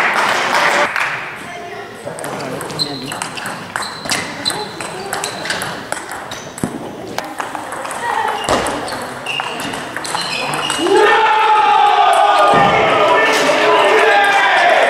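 Table tennis ball being struck back and forth, sharp clicks of ball on bats and table with the occasional deeper thud. About three seconds before the end, several voices start shouting loudly.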